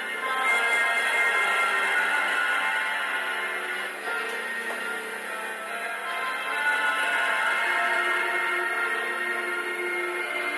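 Live music from a band on stage, with many held notes, recorded straight off the mixing console; it sounds thin, with the low end missing.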